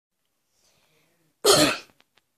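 One short, loud cough about one and a half seconds in.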